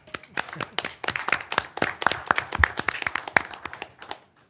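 Applause from a small audience: scattered hand claps that thin out and stop near the end.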